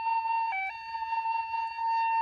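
Wooden end-blown flute playing a slow, breathy melody: a long held note, a brief step down to a lower note about half a second in, then back up to the held note.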